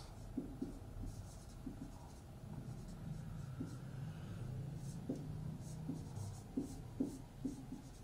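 Marker pen writing on a whiteboard: a string of short, irregular strokes and taps.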